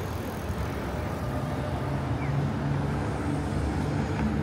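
City street noise with a motor vehicle close by; a low, steady engine hum comes in about a second in and holds.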